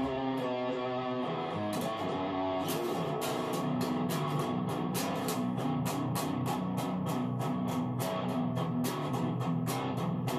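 Seven-string PRS SE Custom 24 electric guitar played through a Fender Mustang I V2 amp, picked with a thick handmade plectrum. It opens with held notes and chords, then goes into a fast picked riff of about four strokes a second, each pick attack sharp.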